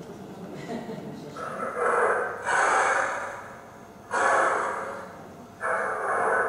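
A recorded animal call played through loudspeakers: about four breathy bursts without a clear pitch, each lasting about a second, with short gaps between them.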